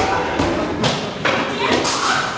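A few dull thuds and knocks, roughly one every half second, with indistinct voices between them.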